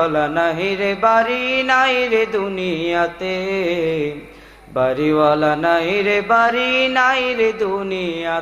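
A boy's voice singing a Bengali devotional song (gojol) into a microphone, with no instrument, in two long melodic phrases with held, ornamented notes and a short breath a little after four seconds in.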